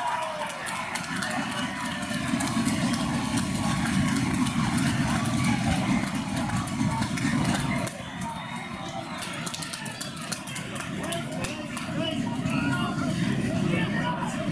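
Crowd of spectators at a rugby league ground: many indistinct voices and shouts over a steady low rumble, louder for a few seconds and then dropping back about eight seconds in.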